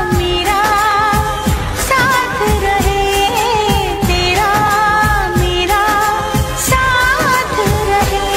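A Hindi romantic song: a solo singer's melody, with wavering held notes, over a steady beat.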